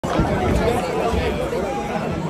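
Audience chatter: many overlapping voices talking at once, with no music playing.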